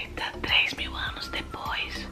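A soft whispering voice over quiet background music.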